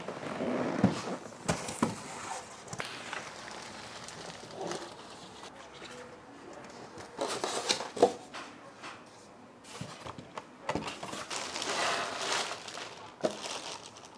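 Unboxing handling sounds: cardboard and polystyrene foam packing shifting under the hands, with scattered clicks and knocks as parts are lifted out and set down, and plastic wrapping rustling and crinkling near the end.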